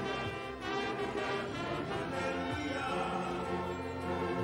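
Church orchestra of violins and brass instruments playing worship music in long held notes.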